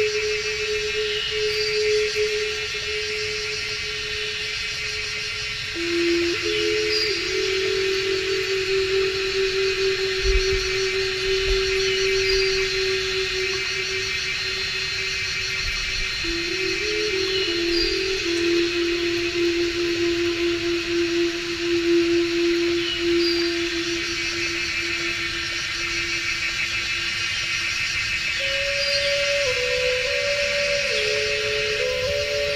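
A dense, steady insect chorus with a short high bird chirp about every five seconds. Under it runs slow background music of long held low notes that step to a new pitch every few seconds.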